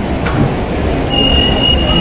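Low rumble and hubbub of a crowded indoor mall queue; about a second in, a single steady high-pitched tone starts and holds for over a second.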